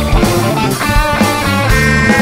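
Instrumental passage of a classic hard rock song: a lead electric guitar playing held notes over drums, bass and Hammond organ.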